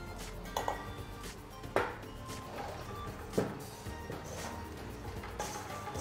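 Wire whisk and hands working in a stainless-steel mixing bowl, giving a few sharp metallic clinks spread over several seconds, over quiet background music.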